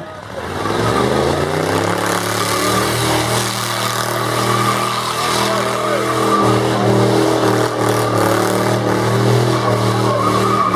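Car engine revving up over the first second or two and then held at high revs during a burnout, the rear tyres spinning against the pavement.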